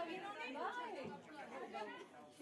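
People talking and chattering, voices overlapping.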